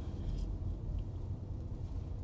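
Low steady rumble of tyre and road noise inside a Tesla's cabin as the electric car rolls slowly and slows toward a stop, with one faint click about a second in.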